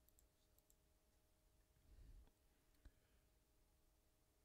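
Near silence: faint room tone with a few soft, brief clicks.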